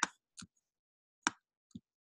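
A few short, sharp clicks of computer input, spaced unevenly about half a second apart, the loudest about a second in.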